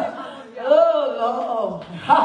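A woman preaching into a handheld microphone, her voice carried through loudspeakers in a large hall, with one drawn-out phrase that rises and then falls in pitch.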